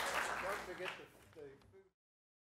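The tail of audience applause dying away, with a few voices talking in the room, fading out and ending in silence just before the end.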